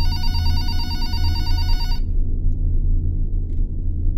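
Office desk telephone ringing with one electronic warbling ring about two seconds long, then stopping. A steady low hum runs underneath.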